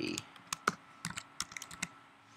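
Computer keyboard typing: a string of separate keystroke clicks, coming faster in the second half.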